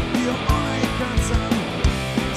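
Punk rock band playing live: electric guitars through Marshall amplifiers with bass and drums, a steady drum beat running under the guitars.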